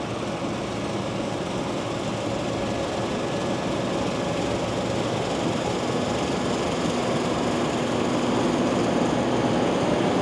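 Fendt IDEAL 7 combine harvesting soybeans: a steady drone of engine and threshing machinery that grows gradually louder as it approaches.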